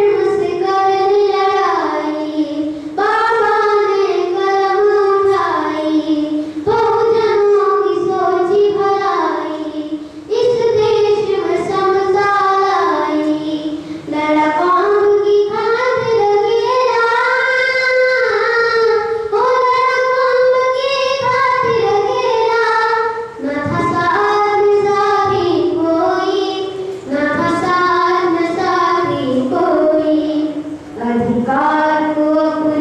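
A boy singing a song solo into a microphone, with no instruments heard, in sung phrases of a few seconds each with short breaks between them.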